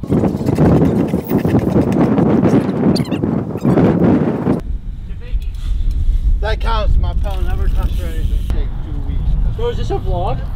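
BMX bike tyres rolling on a concrete skatepark ramp, a loud rushing noise that cuts off suddenly about halfway through. Untranscribed voices and a low rumble follow.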